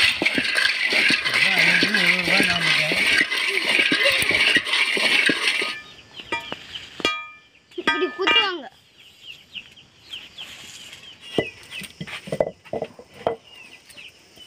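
Neem seeds and dried chillies rattling and crackling as they dry-roast in a pan over a wood fire, for about the first six seconds. After that the sound drops, leaving a few short calls and then several scattered knocks of an iron pestle in a stone mortar near the end.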